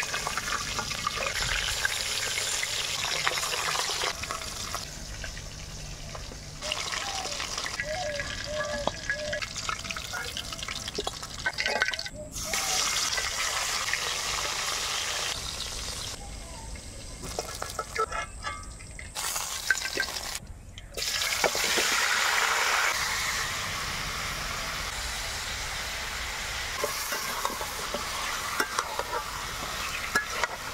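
Chital fish pieces sizzling and spitting in hot oil in a wok, with a metal spatula scraping against the pan as they are turned. The frying hiss breaks off abruptly at a couple of cuts.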